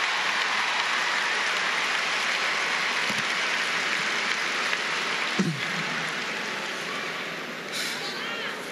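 A large audience in an arena applauding, a dense steady clatter of many hands. A voice calls out about five seconds in, and the applause fades over the last couple of seconds.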